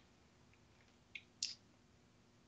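Near silence with a few faint, short clicks a little past a second in, as from a computer mouse being clicked while browsing.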